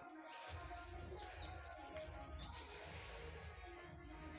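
A small bird chirping: a quick run of a dozen or so short, high notes, starting about a second in and stopping about three seconds in.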